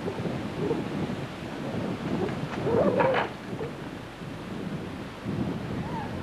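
Wind rumbling and buffeting on the camcorder microphone, with a brief louder burst about three seconds in.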